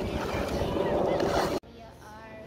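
Wind buffeting the microphone over outdoor beach ambience with faint distant voices, cutting off abruptly about one and a half seconds in to a quiet indoor room tone.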